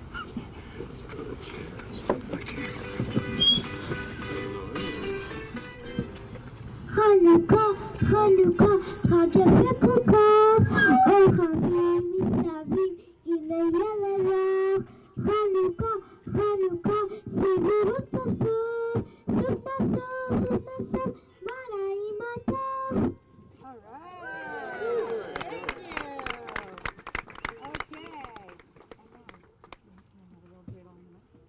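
A small group of young voices singing a Hanukkah song with long held notes, from about seven seconds in until about twenty-three seconds. Mixed voices of the gathered crowd come before and after the song.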